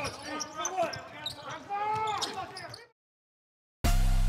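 Game sound of a basketball broadcast: a voice and sharp knocks of the ball on the court, cutting off to silence about three seconds in. Near the end a loud, sudden bass-heavy hit of an outro jingle starts.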